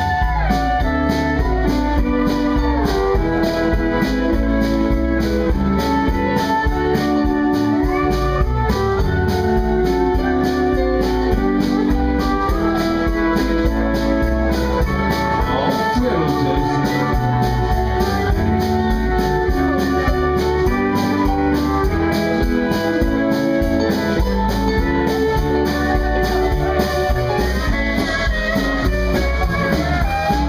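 A western swing band playing an instrumental break live: a fiddle carries the melody in held, bowed notes over electric and acoustic guitar and drums, with a steady beat.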